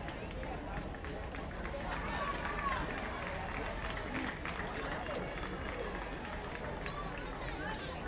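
Indistinct voices of players and spectators chattering and calling out across an outdoor softball field, over a steady low background noise.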